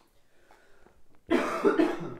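A person coughing: after a quiet second, a quick run of about three loud coughs in half a second near the end.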